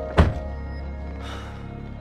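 A car door shutting with a single heavy thud about a quarter of a second in, over background music with held notes.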